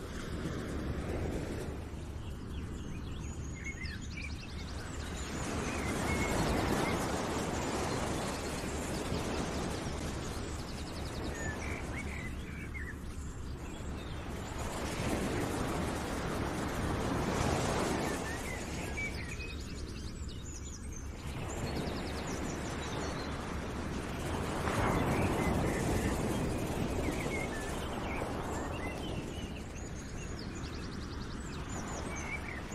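Outdoor nature ambience: a rushing noise that swells and fades about every eight seconds, with faint bird chirps over it.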